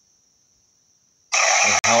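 Dead silence for over a second, then sound cuts back in abruptly: loud hiss with a voice-like pitched sound, from the necrophonic spirit-box app's output, and a man starting to speak.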